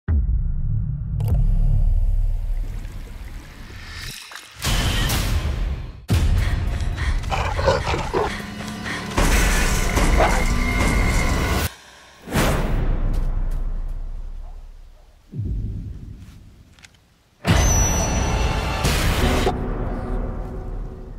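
Film trailer soundtrack: music and sound design built from a series of sudden loud booming hits and crashes. Each one starts abruptly and fades or cuts off into a brief quiet gap before the next.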